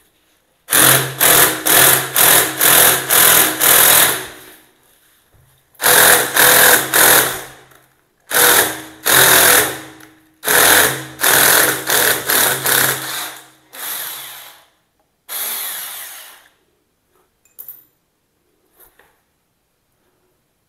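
Cordless drill with its bit in a toilet's floor flange, run in short bursts of the trigger, about three a second, in several runs with short pauses between them. It stops about four seconds before the end, leaving a couple of faint clicks.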